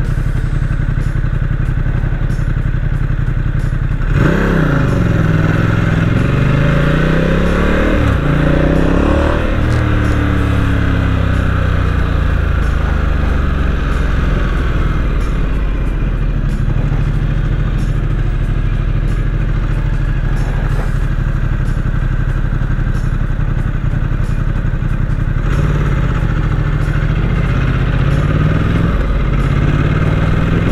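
Ducati XDiavel's 1262 cc V-twin running steadily at low revs, then accelerating hard from about four seconds in: the pitch climbs and drops back with each upshift. It then settles to a steady city cruise, and near the end it climbs through the gears again.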